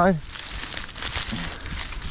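Dry pampas grass stalks rustling and crackling as gloved hands work a rope around the tied bundle.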